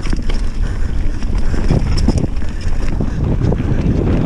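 Wind buffeting an action camera's microphone as a mountain bike descends a dirt trail, over a steady rumble of tyres on the ground. Short knocks and rattles from the bike running over bumps come through the rush.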